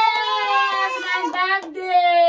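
A high voice singing long held notes: one long note slowly falling in pitch, a short break near the end, then a new note starting.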